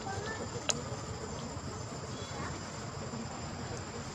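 Insects buzzing steadily in the background with a thin, high, continuous whine, and a single sharp click about a second in.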